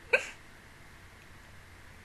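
A woman's short giggle: a single brief burst of laughter just after the start.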